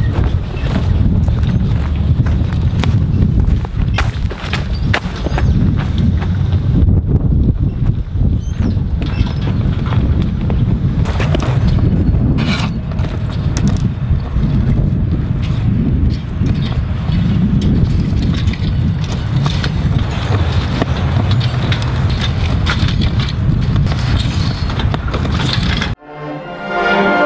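Wind buffeting the microphone outdoors: a loud, uneven low rumble, with occasional faint clicks and scrapes over it.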